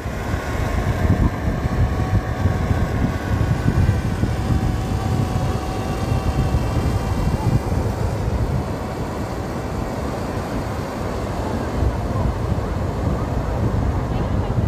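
Wind buffeting the microphone with a steady rumble, over the hum of a DJI Mini 2 drone's propellers, which fades out over the first half as the drone climbs away.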